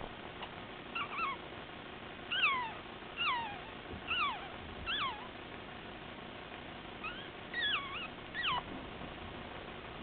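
A very young Yorkshire terrier puppy whimpering: a series of short, high-pitched squeaky cries that slide down and up in pitch. They come in two bouts, from about one to five seconds in and again around seven to nine seconds.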